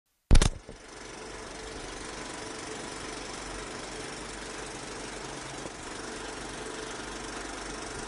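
A sharp, loud click just after the start, then a steady, machine-like rumbling noise with a faint hum.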